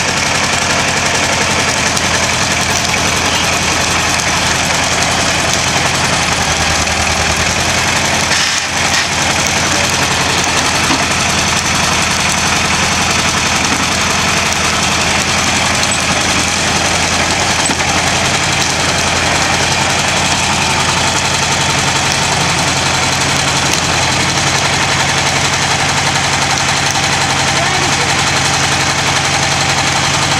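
Small crawler dozer's engine running steadily under load as its blade pushes a wooden outhouse over. The sound dips briefly about eight and a half seconds in.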